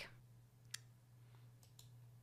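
Near silence, broken by a single short computer mouse click about three-quarters of a second in, with a couple of fainter ticks near the end.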